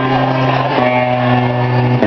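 A live band's electric guitars and bass guitar hold sustained notes, the chord changing about three-quarters of a second in and again at the end.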